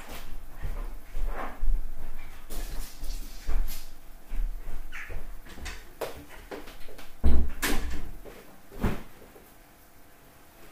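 A series of household knocks and bumps, like a door or cupboard being opened and shut, with low thuds in between. The two loudest come about seven and a half and nine seconds in, and it quiets near the end.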